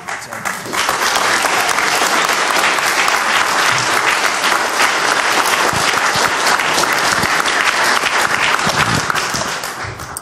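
A roomful of people applauding: the clapping builds within the first second, holds steady, then tapers off near the end.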